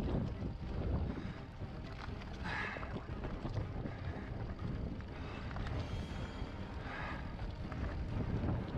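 Wind buffeting the camera microphone over the rumble and rattle of a mountain bike rolling down a rocky dirt trail, with two brief hissy rushes, about two and a half seconds in and near the end.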